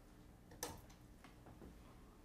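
Near silence with a few faint, short clicks and ticks, the clearest about half a second in.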